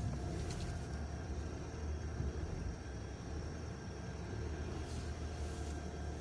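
Steady low engine and road rumble of a car heard inside its cabin while driving.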